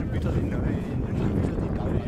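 Wind buffeting the camera microphone, a loud, steady low rumble, with faint shouts from players and spectators on the pitch in the distance.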